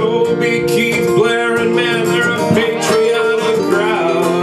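Live country song played on strummed steel-string acoustic guitars, among them a Martin OM-21, with a male voice singing a line of the verse over them.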